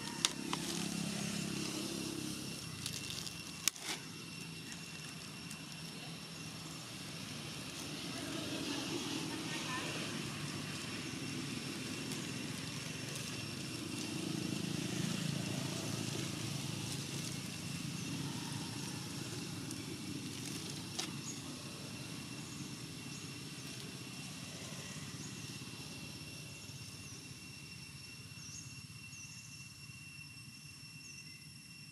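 Outdoor background of indistinct voices and passing motor traffic that swells a few times, over a steady high-pitched whine. There are a couple of sharp clicks near the start.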